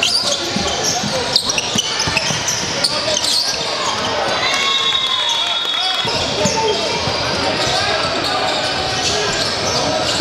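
A basketball bouncing on a hardwood gym floor during play, with the voices of players and spectators echoing through a large hall.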